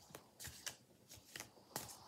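A deck of oracle cards being shuffled by hand: a quiet run of short card slaps and flicks, about six in two seconds, unevenly spaced.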